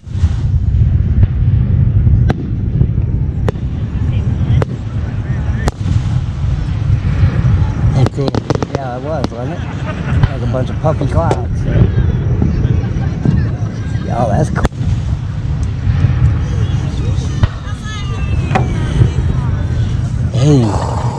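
Aerial fireworks shells bursting: a series of sharp booms and crackles at irregular intervals over a steady low rumble.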